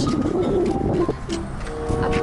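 Low cooing of a pigeon, with wind buffeting the microphone.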